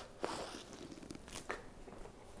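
Faint biting and chewing of a piece of baguette soaked in beef broth, with a few soft crunches of the crust.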